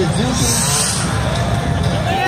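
A motocross bike engine revs as the bike launches off the freestyle jump ramp. It is mixed into loud PA music and the chatter of a crowd.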